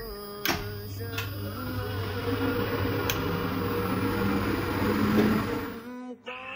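A sharp click about half a second in, then CT scanner machinery running with a steady hum and a whirring noise that builds until near the end and then falls away.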